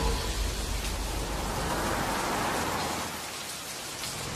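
Heavy rain falling steadily on a street, an even hiss that eases slightly towards the end, with a low rumble fading away over the first couple of seconds.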